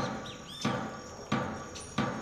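Bird chirps from a ChucK-programmed nature soundscape played over a loudspeaker: a few short arching chirps in the first second, with two short knocks.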